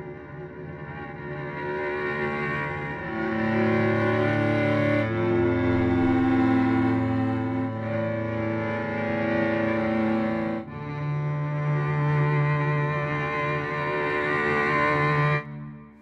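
Sampled solo cello bowed sul ponticello (the soft sul ponticello articulation of the Cello Untamed library), played from a keyboard as sustained, overlapping chords. The sound swells in over the first couple of seconds, and the chords change about every two to three seconds before the notes stop just before the end.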